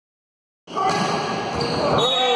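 A volleyball hit at the net and bouncing on a wooden gym floor, with players and spectators shouting in the hall. The sound starts about two-thirds of a second in.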